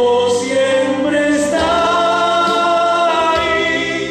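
A man singing a Spanish Christian song into a handheld microphone, amplified through the church's sound system, holding one long note through the second half.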